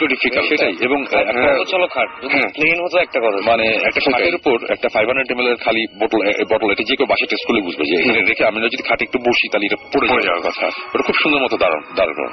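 Speech only: a person talking without pause, with the narrow, band-limited sound of a radio broadcast.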